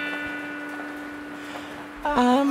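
The last chord of a song's guitar backing-track intro, held and slowly fading away.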